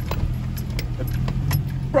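Steady low engine and road rumble inside a moving vehicle's cabin on a rough trail, with a light jingle of keys and a few small rattling clicks.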